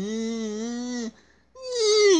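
A person's voice in play-acted wailing: one long held cry that breaks off about a second in, then another that starts near the end and falls in pitch.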